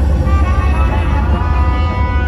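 A Dhumal band playing live and loud: a held, horn-like melody line over a heavy, constant bass.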